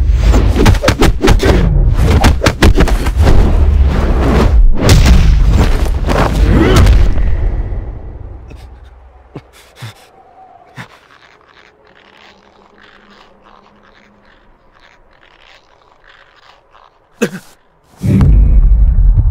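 A loud run of bass-heavy hits and impacts for about seven seconds, fading out about eight seconds in. Then comes a quiet stretch of faint crackles and a low hum, with one sharp hit just before the end.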